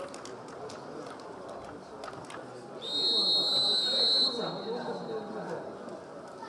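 A referee's whistle blown once, a long steady blast of about a second and a half starting about three seconds in, signalling the kick-off of a football match.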